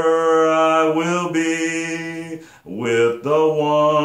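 A man singing a slow hymn-like song in long held notes, with a short break for breath about two and a half seconds in.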